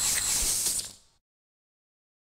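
A burst of hissing noise like TV static, lasting about a second before fading out to dead silence.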